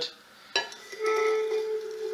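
Stainless steel travel mug knocking against the wooden base, then a steady, even-pitched ringing tone for about a second as it is slid into place.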